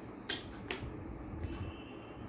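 Two short, sharp clicks about half a second apart, then a fainter one: a puzzle piece being pressed into its slot in a children's vehicle puzzle board.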